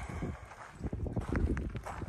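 Footsteps on a gravel path, a series of irregular crunching steps, louder in the second half.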